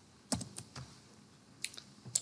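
A few faint, short computer clicks at uneven intervals, from a mouse or keyboard being worked at the desk.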